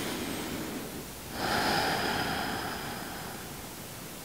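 A slow, deep human breath: a soft inhale, then about a second and a half in a longer, louder exhale that fades away.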